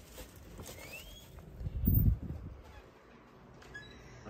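Hotel room door with a keycard lock being unlocked and pushed open: a short faint rising chirp about a second in, then a cluster of low, heavy thumps about two seconds in as the door swings and is handled.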